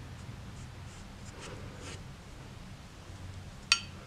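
Soft, faint strokes of a watercolour brush on wet paper over a low steady hum, then a single short, ringing clink near the end.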